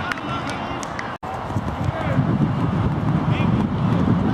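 Indistinct players' voices calling and shouting across a rugby pitch, over a steady low rumble that grows heavier in the second half. The sound drops out for an instant just over a second in.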